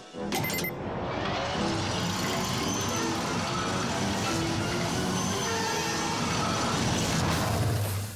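Cartoon sound effect of a test cart speeding along a rail track, a steady dense rushing noise under dramatic music, ending as the cart reaches the crash wall.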